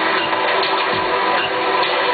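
Live electronic music played on synthesizers and a laptop: dense sustained synth tones over a steady beat of deep kick drums that fall in pitch, about one every two-thirds of a second.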